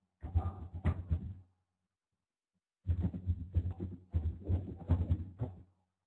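Two bursts of muffled knocking and clicking over a low electrical hum, each cutting in and out abruptly as a microphone noise gate opens and closes. The first burst runs about a second, and the second, longer one starts just under three seconds in.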